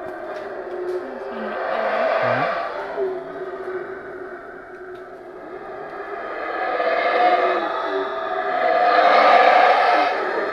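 Yucatán black howler monkeys roaring in two long swelling bouts. The first peaks about two seconds in; the second builds from about six seconds in and is loudest near the end.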